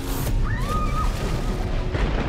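Film score and sound design: a deep low rumble under a dense wash of noise and music. A bright noisy burst comes at the very start, and a short tone glides up and then holds about half a second in.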